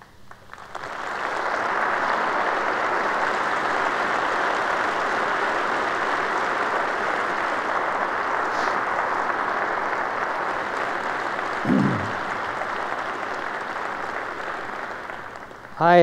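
A large audience applauding in a hall: a steady, dense roll of clapping that swells up within the first two seconds and dies away just before the end. A single voice rings out briefly about twelve seconds in.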